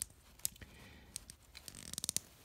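Hands handling a small plastic action figure: a few faint, light clicks and rustles as it is turned and repositioned in the fingers.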